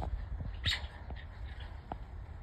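A single short, harsh bird call about two-thirds of a second in, over a low rumble.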